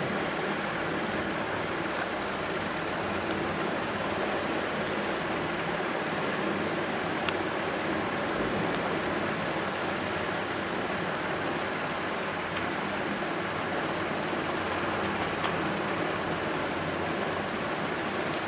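Steady rushing background noise with no speech, and a faint click about seven seconds in.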